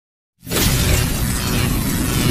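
Logo-intro sound effect: silence, then about half a second in a sudden loud, noisy crash-like burst with a heavy low rumble that carries on steadily.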